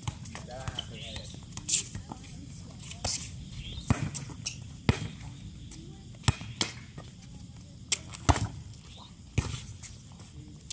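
Scattered sharp slaps and knocks of a volleyball being handled and hit on a hard outdoor court, about ten of them at uneven intervals, with faint voices of players.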